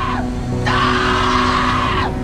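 Dark trailer music with steady held tones, overlaid by a long harsh screeching sound effect that breaks off just after the start and returns about two-thirds of a second in, sliding down in pitch as it stops.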